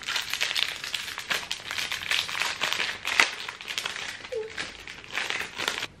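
Clear plastic packaging crinkling and crackling as it is handled and pulled open to unwrap a small cloud-shaped box cutter, with many small crackles throughout.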